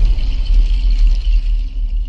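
A deep, steady cinematic rumble with a thin hiss above it: the low tail of a logo-intro sound effect, following a musical boom.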